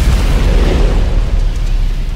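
Record-label logo sting sound effect: a loud fiery boom with a deep rumble that holds, then begins to fade near the end.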